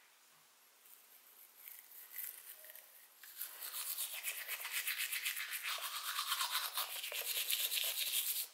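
Toothbrush scrubbing teeth in quick, even back-and-forth strokes, faint at first and much louder from about three seconds in.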